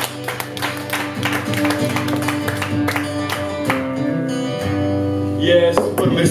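Acoustic guitar strummed in a steady rhythm, then a chord left to ring at the close of a song.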